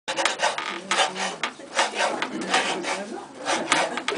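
A clog maker's long-handled block knife shaving a wooden clog blank: a run of short, sharp scraping cuts, about two to three a second, as the shape is roughed out.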